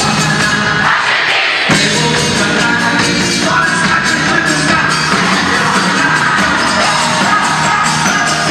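Live pop-rock band playing through a PA system; the bass and drums drop out for a moment about a second in, then the full band comes back in.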